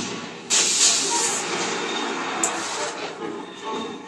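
TV drama sound effects playing through computer speakers: a sudden loud rushing hiss starts about half a second in and fades over the next two to three seconds.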